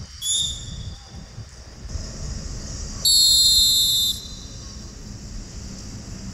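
Referee's whistle blown twice: a short blast at the start, then a louder, steady blast of about a second near the middle, over low outdoor background noise.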